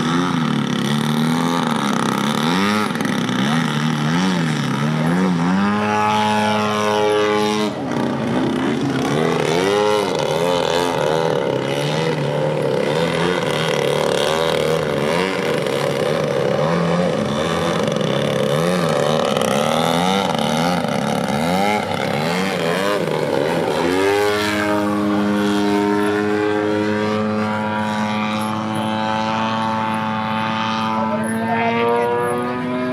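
Petrol engine and propeller of a large radio-controlled Extra 300 LX aerobatic plane in 3D flight. The pitch rises and falls rapidly as the throttle is worked in a hover. It climbs to a steady higher note about six seconds in, dips briefly near eight seconds, and holds a steady higher note again from about twenty-four seconds on.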